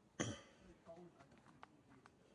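A single short, harsh cough just after the start, followed by a few faint ticks.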